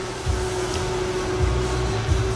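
Steady machine hum with one held tone, under an uneven low rumble that swells twice.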